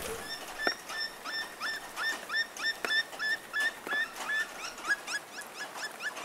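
A small animal's repeated short, high-pitched calls, about three a second, coming faster near the end, with a few faint clicks among them.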